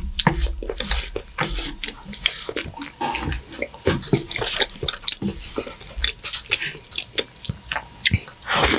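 Close-miked wet chewing and lip-smacking of creamy fettuccine alfredo. Chopsticks squelch through the sauce-coated noodles, giving many short, sticky clicks and smacks.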